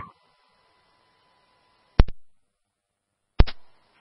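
Two sharp clicks from a two-way radio channel between transmissions, typical of a radio keying up or its squelch closing. The first comes about two seconds in and the second a little before the end, over faint radio hiss.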